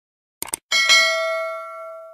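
Subscribe-button animation sound effect: a quick double mouse click about half a second in, then a notification-bell ding that rings on and slowly fades.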